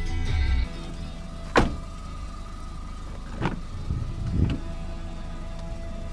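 Knocks from a car door being worked: a sharp clunk about one and a half seconds in, then two lighter knocks, one past halfway and one later, over quiet background music.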